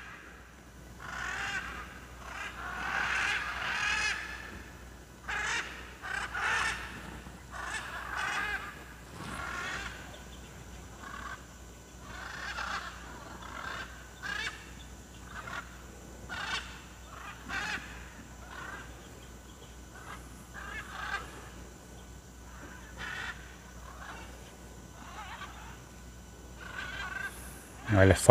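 A flock of macaws calling in flight overhead: many short, harsh squawks, one after another, thicker and louder in the first several seconds and more scattered after.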